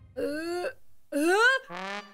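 A cartoon character's voice moaning twice, each short moan rising in pitch, then a brief flat buzzy note near the end.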